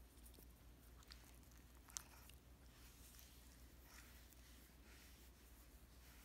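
Near silence with a few faint small clicks and soft rustles, the sharpest about two seconds in: a puppy mouthing and nibbling a person's finger.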